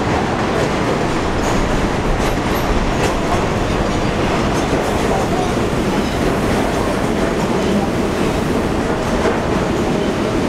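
Elevated subway trains running on a steel elevated structure: a steady, loud running noise as one train crosses on a distant structure and another approaches the platform.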